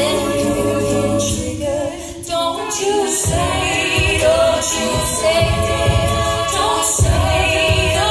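A female a cappella group singing a pop song in harmony through microphones, with no instruments; a steady low beat joins the voices about three seconds in.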